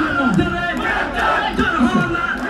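Large crowd shouting together, many voices overlapping at once.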